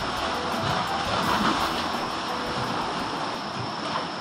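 A steady rushing noise of wind and sea waves, with light background music faint underneath.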